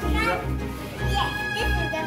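Background music with a steady bass beat, and a young child's voice over it.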